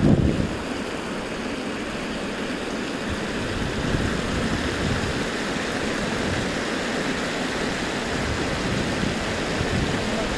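Water spilling in a steady rush over the long edge of a fountain's reflecting pool into the channel below. Wind buffets the microphone in the first half-second.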